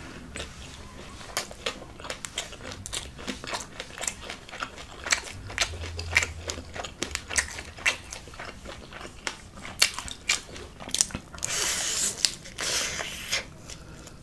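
Close-up chewing of corn-tortilla carne asada tacos: soft, irregular wet mouth clicks and crunches, with louder crunching near the end.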